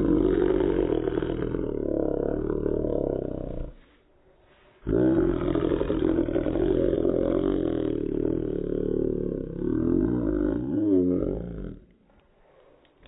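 A corgi play-growling, slowed down by slow-motion playback into deep, lion-like roaring growls: two long growls, the second starting about five seconds in after a short break.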